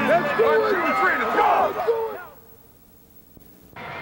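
Several voices shouting and yelling at once, as from a team of football players fired up on the sideline. About two seconds in the shouting cuts off sharply to a quiet stretch, and noise comes back near the end.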